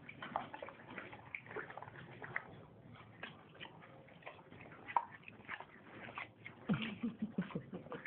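Horse eating, smacking his lips and chewing in a run of irregular wet clicks. A brief low sound comes about seven seconds in.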